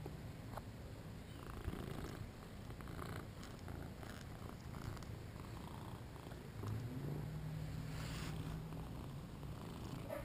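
British Shorthair cat purring while being stroked, a steady low rumble that grows a little louder about two-thirds of the way through.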